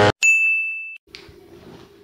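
A single bright, high ding about a quarter second in that rings at one pitch and fades out within about a second, followed by a soft click and faint low room hum.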